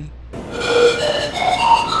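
Air blown across the mouths of a row of glass test tubes, one after another, from the empty tube towards the fullest: a quick run of breathy whistling notes stepping up in pitch, each shorter air column above the water sounding higher.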